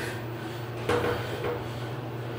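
Steady low hum of a hydraulic elevator inside its stainless-steel cab, with a single sudden clunk about a second in.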